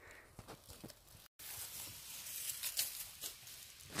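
Dry beech leaf litter rustling and crackling as a hand and body move through it on the forest floor, with many small crisp clicks. It follows a brief silent gap a little over a second in.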